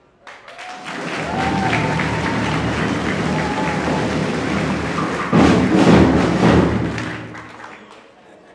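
A crowd applauding loudly, with some cheering, starting just after the beginning, at its loudest a little past the middle and dying away near the end.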